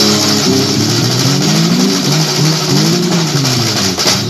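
A motor vehicle's engine running close by, its pitch rising and falling in slow swells as it is revved, over fainter music.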